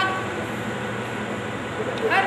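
A pause in a woman's speech, filled by a steady background hum and hiss. The tail of her spoken phrase fades out at the very start.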